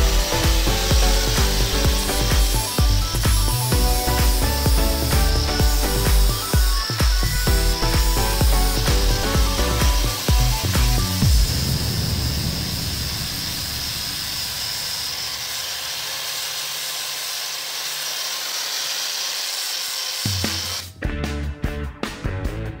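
Angle grinder with a wood flap disc sanding a cork oak slice, running with a steady high whine. For the first half it lies under background music with a beat. The music drops out about halfway and the grinder runs on alone, then the music returns near the end.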